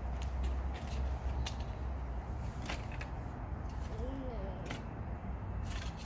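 Small wood bonfire burning, crackling with irregular sharp pops over a steady low rumble.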